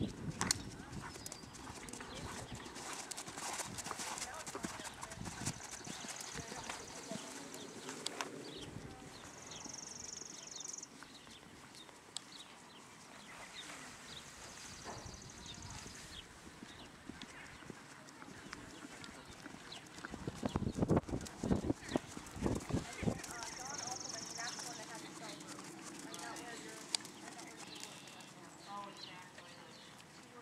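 Horse hooves on a sand arena, a soft, irregular clip-clop as the horse trots and then walks. A run of louder thumps comes about two-thirds of the way through.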